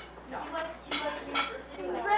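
Cutlery clinking against plates and dishes, with a couple of sharp clinks about a second in, under low table conversation.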